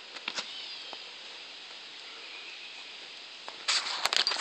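Steady outdoor background hiss with a few faint clicks and a brief faint chirp early on; a loud burst of rustling noise begins near the end.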